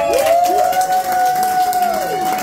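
A small audience clapping and cheering as a string-band tune ends, with one long, steadily held whoop over scattered claps.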